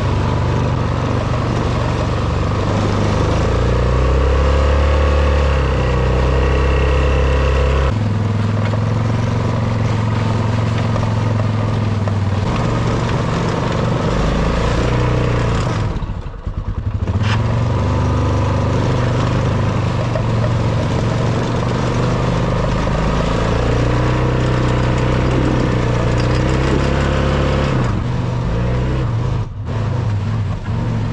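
ATV engine running under load while pushing snow with a front-mounted plow blade, its note rising and falling with the throttle, with a brief drop about halfway through and another near the end.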